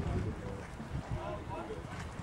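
Wind buffeting the microphone, a steady low rumble with irregular gusts, with faint voices in the background.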